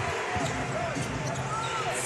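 Basketball being dribbled on a hardwood court under a steady murmur of arena crowd noise.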